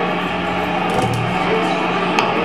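Electric guitar and bass played loosely through amplifiers between songs, not a full song: a short low bass note about a second in, over a steady low amplifier hum.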